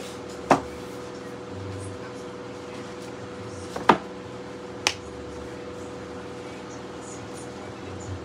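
Books being handled on a bookshelf: three sharp knocks, one about half a second in and two more around four and five seconds in, over a steady hum.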